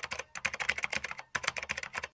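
Keyboard typing sound effect: rapid key clicks in three quick runs, with a short break between them. It stops abruptly just after the end, timed to text being typed out on screen.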